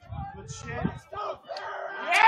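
Voices of players and spectators shouting and calling out during a soccer match, several overlapping, with no clear words.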